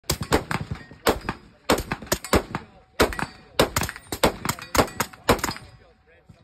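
AR-9 style pistol-caliber carbine fired semi-automatically in rapid strings, about twenty shots in six seconds, with the firing stopping just before the end.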